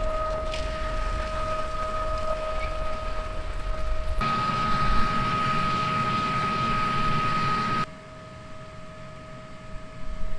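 Steady, even-pitched machine whine from the running tractor and planter, with rushing noise over it through the middle of the stretch that falls away near the end.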